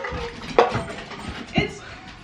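A dish knocks sharply once on the kitchen counter about half a second in, amid light handling noise, and a short bit of voice follows near the end.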